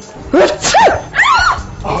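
High-pitched shrieks of surprise from women: two loud cries that each rise and fall in pitch, about half a second in and again just past the middle, with a short exclamation near the end.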